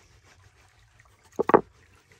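Wooden knocks from rolling out pasta dough: the wooden rolling pin and board clatter in a quick double knock about one and a half seconds in.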